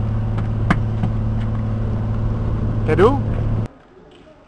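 A boat's engine running with a steady low drone, with a few light knocks. It cuts off abruptly near the end, leaving a much quieter background.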